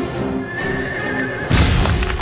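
Cartoon horse whinnying, a wavering high cry, over background music. About one and a half seconds in, a sudden heavy low crash as its hooves stamp down and crack the ground.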